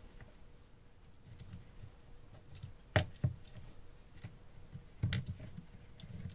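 Manual caulking gun being squeezed to push out silicone, its trigger and plunger clicking: a sharp click about three seconds in with a second just after, then a few more about five seconds in.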